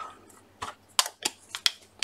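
Buttons clicking against each other and the glass of a small jar as it is searched through: about six sharp little clicks, mostly in the second half.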